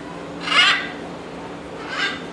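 Blue-and-gold macaw squawking: one loud, harsh call about half a second in, then a shorter, softer one near the end.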